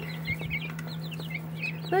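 A brood of young chicks peeping: many short, high peeps, each falling in pitch, several a second, over a steady low hum.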